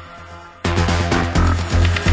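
Electronic dance music from a house/trance DJ mix. The kick drum drops out briefly, then the full track with a steady four-on-the-floor kick comes back in sharply just over half a second in.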